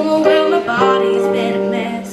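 A girl singing with vibrato while playing sustained chords on a Yamaha digital keyboard, the chords changing a little under a second in.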